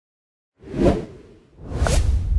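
Animated-logo sound effects: a whoosh about half a second in, fading out, then a second rising whoosh near the end with a short upward blip and a deep low rumble setting in under it.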